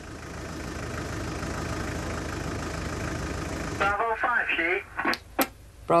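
A car engine idling steadily with a low rumble. About four seconds in, a short voice message comes over a two-way taxi radio.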